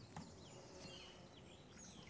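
Near silence: faint outdoor ambience with a few soft, distant bird chirps.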